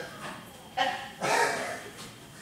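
A dog barking twice in quick succession, about a second in.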